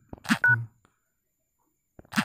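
Smartphone dialer keypad tone: one short beep of two tones sounding together as the # key is pressed to finish a top-up code, about half a second in, just after a brief rush of noise.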